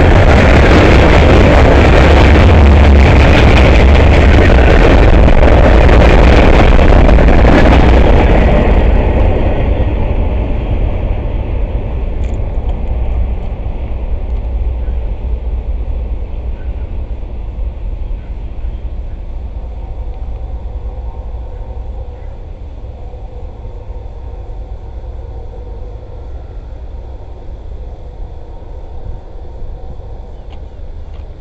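The last cars of a freight train, covered hoppers and boxcars, rolling past close by: loud steel wheels on rail with a deep rumble. About eight seconds in it starts to fade as the end of the train moves off, leaving a fainter rumble that keeps dying away.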